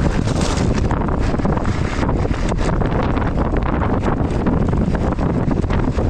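Heavy wind buffeting an action camera's microphone as a mountain bike is ridden over a rough stony track, with frequent small knocks and rattles from the bike.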